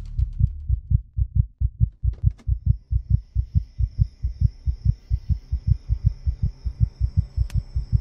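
Heartbeat sound effect for suspense: low thumps repeating quickly and evenly, about five a second. A thin, steady high tone comes in about two seconds in, and there is a single sharp click near the end.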